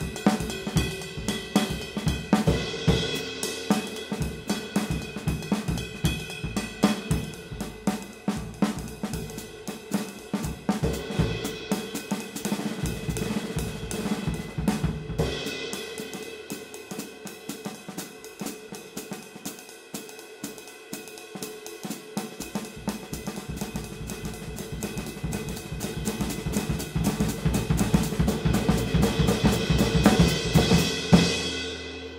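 Sabian Crescent 20" Wide Ride cymbal ridden with a drumstick in a steady groove, its wash ringing on under the strikes, with snare, bass drum and hi-hat. In the middle the bass drum drops out and the playing gets softer, then it builds louder toward the end.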